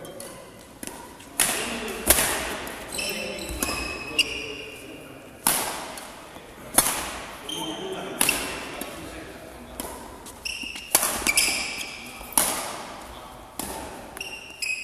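Badminton rally: sharp racket strikes on the shuttlecock about every second or two, echoing around a large sports hall, with short high squeaks of shoes on the court floor between the hits.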